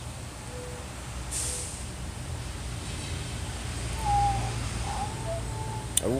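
Faint murmuring of a napping baby coming through a baby monitor's speaker: a few short, gliding sounds in the second half, over a low steady background rumble.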